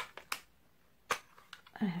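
A few sharp clicks and taps as long fingernails and hands handle a small plastic mini nail lamp, turning it over.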